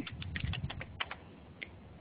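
Typing on a computer keyboard: a quick run of short keystrokes entering a username into a login box, then one last key a moment later.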